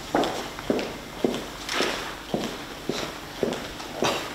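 Footsteps of high-heeled shoes clicking on a hard stone floor, an even walking pace of about two steps a second.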